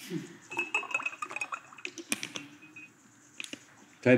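Water poured from a plastic bottle into a drinking glass, with a faint steady ringing tone from the glass as it fills. Light clinks and a few sharp clicks of the bottle and glass.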